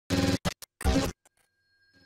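Electronic intro sting built from record-scratch-like sound effects: four quick, choppy bursts in the first second or so.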